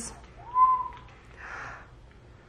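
A single high whistle-like tone about a second in: it rises, then holds steady for about half a second. A brief soft hiss follows.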